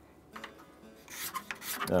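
Faint scraping of a hand scraper along the edge binding of an acoustic guitar body, with a few short strokes in the second half. A man's voice starts at the very end.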